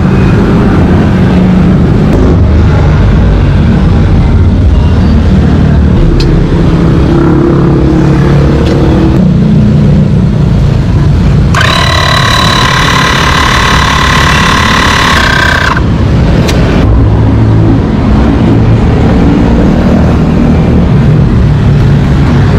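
Portable electric tyre inflator running steadily, close by, pumping up a motorcycle tyre just patched after a puncture. A harsher, higher-pitched noise joins it for about four seconds near the middle.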